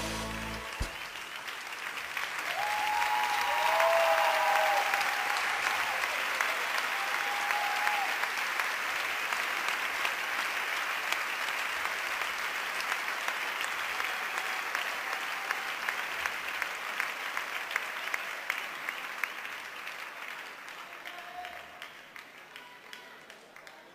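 Large arena audience applauding as the last note of the music dies away about a second in. There are a few cheers between about two and five seconds in. The clapping swells, holds steady, then thins out toward the end.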